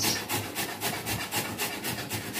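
A piece of vegetable being grated on a metal hand grater, with quick, even rasping strokes, about three or four a second.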